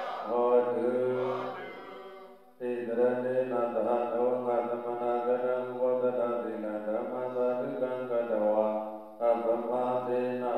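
Voices chanting a prayer together in a steady recitation of long held phrases, pausing briefly about two and a half seconds in and again near the end.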